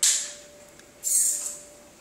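Two short hissing scuffs about a second apart: the RC mobility scooter's tyres scrubbing on the concrete floor as it moves and turns.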